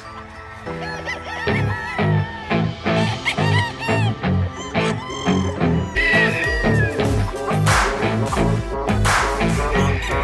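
Rooster calls heard over an electronic backing track with a steady, even beat and no vocals.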